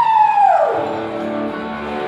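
Live band with electric guitars playing: a held high note slides down and fades out about three-quarters of a second in, leaving sustained guitar chords ringing.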